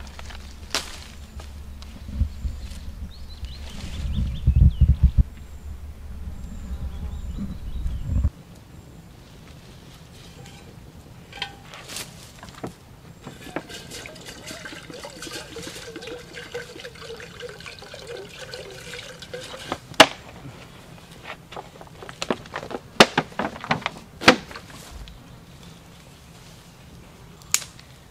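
Liquid being poured and trickling into a pot over a campfire, with a few sharp snaps near the end. A low rumble with thumps fills the first part and cuts off suddenly.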